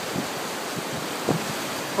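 Steady rush of fast-flowing, choppy river water, with wind buffeting the phone's microphone.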